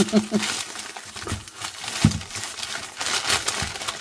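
Crumpled newsprint grocery ads crinkling and rustling as they are pulled open and unfolded by hand.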